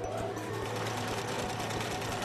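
Rapid, steady mechanical clatter over a low hum, a machinery sound effect for the animated conveyor belts, over background music.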